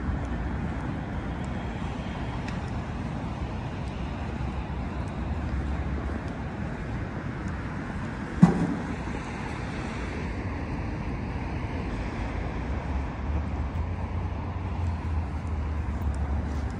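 Steady low rumble of city road traffic, with one sharp thump about halfway through.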